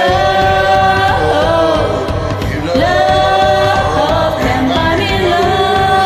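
A woman and a man singing a karaoke duet over a backing track, holding long notes that slide from one pitch to the next.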